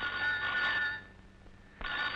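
Black rotary-dial desk telephone's bell ringing twice: one ring of about a second, then a second ring starting near the end.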